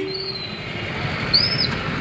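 Street and crowd noise from a busy road procession, a steady hiss and rumble, with one short high chirp about one and a half seconds in.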